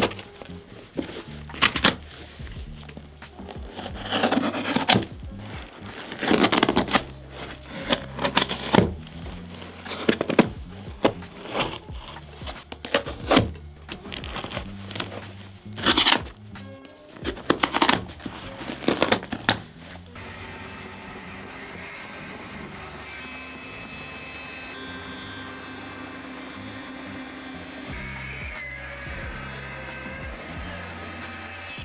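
Music with a steady beat over workshop sounds. For the first two-thirds there are many short, sharp cutting and ripping sounds as winter boots are cut open by hand with a small blade. From about 20 seconds a band saw runs steadily as it cuts through a Sorel boot.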